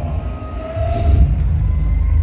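Live band's intro heard through a concert sound system: a loud, low bass rumble, with a faint held keyboard-like note about halfway through.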